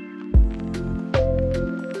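Background music with a steady beat and sustained chords.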